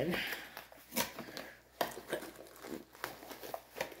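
Cardboard kit box and its plastic packaging being handled while it is opened: short, scattered rustles and clicks, about half a dozen over a few seconds.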